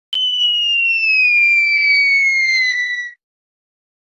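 A single whistle-like tone that slides slowly down in pitch for about three seconds, then cuts off suddenly. It is a descending-whistle sound effect over a title card.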